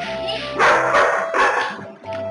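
Golden retriever × flat-coated retriever puppy barking twice, the two barks about a second apart, over background music.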